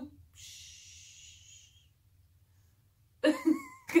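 A woman hushing, a single soft 'shhh' lasting about a second and a half, followed by near silence and a short burst of her voice near the end.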